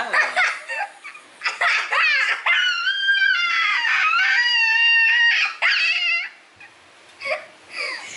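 Two boys laughing hard, breaking into long high-pitched squealing laughter in the middle, then dying away about six seconds in with a last short laugh near the end.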